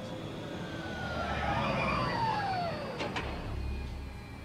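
Elevator-descent sound effect from the TV episode: several whining tones slide downward together, a click comes about three seconds in, and a low rumble follows.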